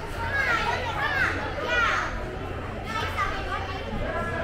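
Children's voices calling out: several short, high calls that rise and fall in pitch, over a background of chatter.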